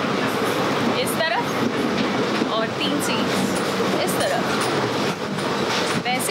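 Running noise of the 22164 Mahamana Express, an Indian Railways train on the move, heard inside a second-class chair car with its windows open: a steady, dense rumble of the coach on the track, with faint passengers' voices in the background.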